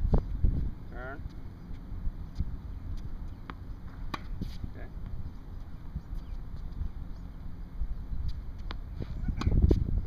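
Wind rumbling on the microphone, with sharp knocks of tennis balls on racquet strings and the hard court now and then, the loudest near the end as a backhand is struck.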